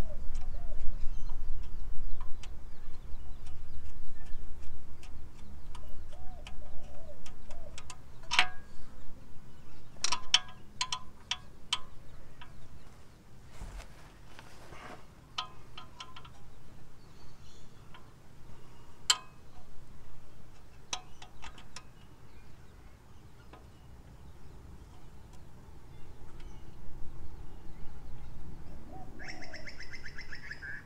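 Light metallic clicks and taps in small scattered clusters as a Toyota Land Cruiser brake hose fitting is worked by hand to get its thread started. There is a low rumble in the first several seconds, and birds call faintly in the background.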